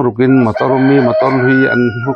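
A man talking, with a rooster crowing behind his voice from about half a second in, its drawn-out call lasting to the end.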